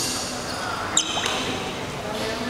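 Sports shoes squeaking on a badminton court, with a sharp high squeak about halfway through, over low chatter in a large hall.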